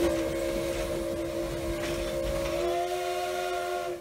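Steam locomotive's chime whistle blown in one long blast of several notes sounding together. It rises a little in pitch about two-thirds of the way through, then cuts off sharply, over the rumble of the moving train.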